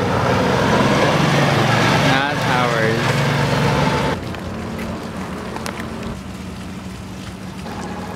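Small engine of a utility cart running as the cart drives by, with a steady low hum under heavy wind noise on the microphone. The sound drops abruptly to a quieter hum about four seconds in.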